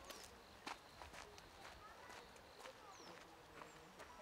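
Near silence: faint outdoor ambience with scattered soft ticks and a few brief, high chirps.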